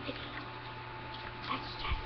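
A pet dog making a few faint short vocal sounds, mostly in the last half second, over a steady low hum.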